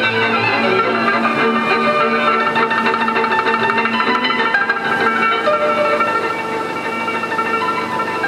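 A folk cimbalom band playing: a hammered cimbalom with fast repeated notes, along with violins and double bass.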